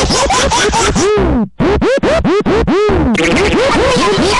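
DJ-style record scratching over music, the kind of effect used in a radio jingle or sweeper: quick up-and-down pitch sweeps, about four or five a second, with a brief break about one and a half seconds in.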